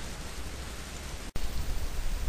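Steady hiss of microphone and recording background noise, with no speech. The sound cuts out for an instant a little over a second in, at an edit, and comes back with more low hum.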